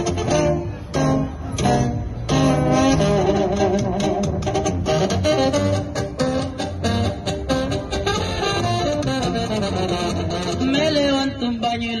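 Instrumental opening of a corrido tumbado backing track, with guitars and bass playing a steady groove; a man's singing voice comes in near the end.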